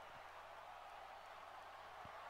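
Near silence: faint steady hiss with a low hum.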